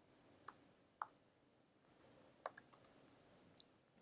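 Faint clicks of computer keyboard keys being typed: two single keystrokes in the first second, then a quick run of several about two and a half seconds in.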